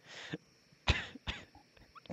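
A few short, breathy bursts of stifled laughter, the sharpest about a second in.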